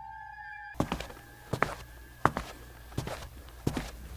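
Footsteps of high-heeled shoes clicking on a tiled floor, a step about every two-thirds of a second, starting about a second in as a held eerie music tone fades out.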